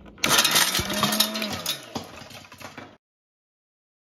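Sumeet Traditional mixer-grinder motor switched on and running, chopping pieces of dried turkey tail mushroom, with dense clatter of the pieces against the jar. The motor's hum drops in pitch about a second and a half in, and the sound cuts off suddenly at about three seconds.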